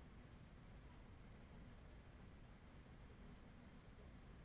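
Near silence: low room hum with a few faint computer mouse clicks, one about a second in, another near three seconds and a quick double click near the end.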